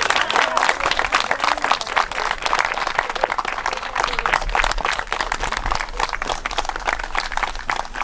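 Audience applauding: many hands clapping in a dense, even patter.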